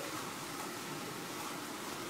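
Steady outdoor background hiss, even throughout, with no distinct events.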